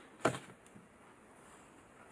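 A short brush of a card planner divider being handled, about a quarter second in, followed by a faint tick; otherwise only low room tone.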